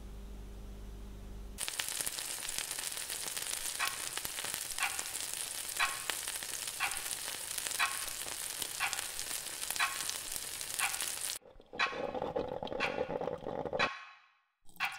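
After a low hum, food frying in a pan sets in about a second and a half in: a steady sizzling hiss with a sharp tick once a second, like a clock. The sizzle cuts off about two and a half seconds before the end and gives way to a busier noise with scattered clicks.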